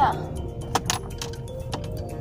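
Car cabin while driving: the steady low rumble of the engine and road, with a couple of sharp metallic jingles, like keys or a hanging chain, just under a second in.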